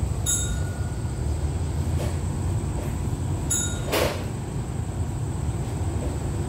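Steady low rumble of a diesel passenger train idling at the platform. A short high ringing tone sounds about every three seconds, twice in these seconds.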